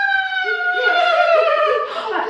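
A long, high-pitched playful vocal squeal held for over two seconds, its pitch sliding slowly down until it stops just before the end.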